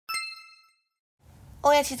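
A single bright bell-like ding, struck once and ringing with several high overtones that fade within about half a second, serving as an intro chime. A woman's voice begins near the end.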